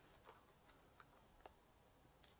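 Faint, sparse clicks, about four in two seconds, as a plastic lighter is handled before a cigarette is lit; otherwise near silence.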